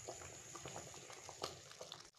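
Thick kadhi (yogurt and gram-flour curry) simmering in a pan, bubbling faintly with scattered small pops, while a silicone spatula stirs it.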